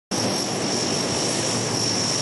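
Turboprop engines of a C-130 Hercules military transport running as it taxis: a steady engine drone with a constant high turbine whine over it.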